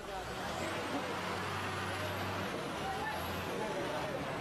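Fire engine's motor running close by: a steady low hum under a broad hiss, the hum easing a little past the middle, with a few voices of people around it.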